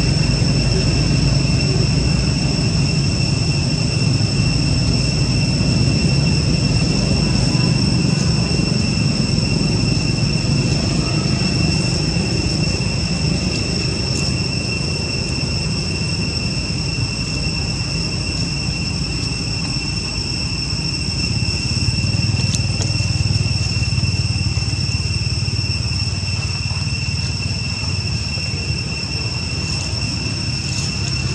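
Steady high-pitched drone of insects, two even tones held throughout, over a loud steady low rumble.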